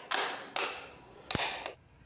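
Plastic cover plate of a modular switch board being pressed and snapped onto its frame: several sharp plastic clicks, about four in two seconds.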